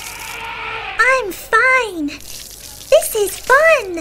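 A recorded water splash or spray sound effect for about the first second, then high-pitched character voices speaking short lines in a rising-and-falling, sing-song way.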